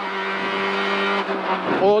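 Peugeot 206 RC Group N rally car's 2.0-litre four-cylinder engine at full speed on a stage, heard from inside the cabin: a steady engine note over road noise, which dips and climbs back about a second and a half in.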